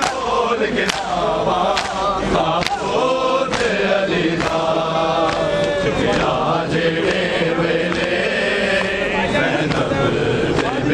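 A large crowd of men chanting a mourning lament in unison, with their matam chest-beating strikes landing together in time, about once a second.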